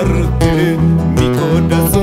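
Recorded song with acoustic guitars strumming and picking over a steady bass line, in a Latin American romantic ballad style.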